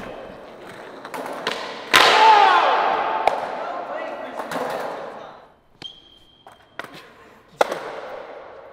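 Skateboard clacking on a concrete floor in a large, echoing hall: a few sharp clacks, then a loud slap about two seconds in that rings out, with a short shout over it. More clacks follow near the end.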